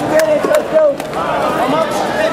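Spectators shouting and cheering, several voices overlapping, with a few sharp clicks near the start and about a second in.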